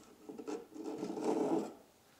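Thin plastic magnifying sheet rubbing and scraping as it is drawn up out of its 3D-printed frame by hand: a dry rustling rasp lasting about a second and a half.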